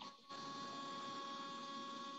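Steady electrical hum with several steady high tones in it, starting about a third of a second in.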